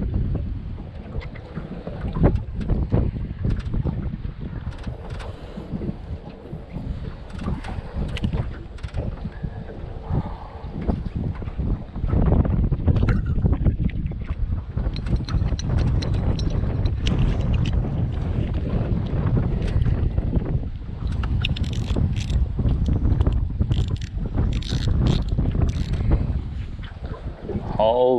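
Wind buffeting the microphone in gusts, louder from about halfway through, with scattered small clicks and knocks from hands working at a tangled spinning reel, its line caught up under the rotor.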